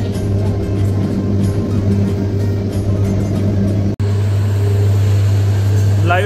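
Papad making machine running, with a steady electric-motor hum under a busy mechanical clatter. The sound breaks off abruptly about four seconds in and resumes as a steadier hum.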